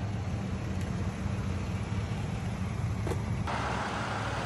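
A pickup truck's engine idling close by, a steady low rumble. About three and a half seconds in, the sound changes abruptly to a brighter, steady hiss of road noise.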